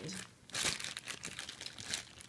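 A clear cellophane bag of wax melts crinkling as it is picked up and handled, a run of quick rustles loudest about half a second in.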